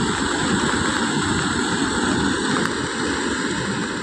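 Muddy floodwater rushing, a steady noise of flowing water.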